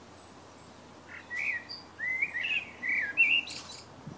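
A small bird singing: a quick run of chirping phrases that starts about a second in and stops just before the end, over a faint steady hiss.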